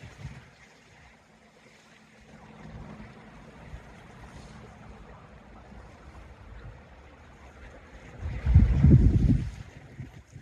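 Wind on an outdoor microphone over a faint low rumble, with a loud low buffet of wind about eight and a half seconds in.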